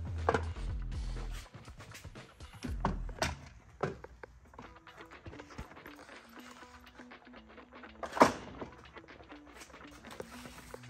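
Quiet background music under scattered clicks and knocks of outboard engine parts being handled and popped loose, with one louder knock near the end.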